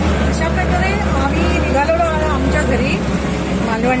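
Auto-rickshaw engine running steadily while moving, a low even drone heard from inside the cab, with a woman talking over it.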